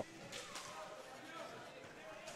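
Faint sound of a rink hockey game in play: skates rolling on the court, a few faint stick-and-ball knocks, and distant voices.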